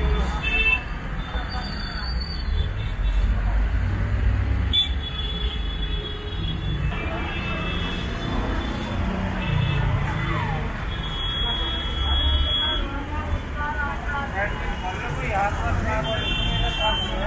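Road traffic: engines of passing vehicles rumbling steadily, with a few short horn toots and voices in the background, louder near the end.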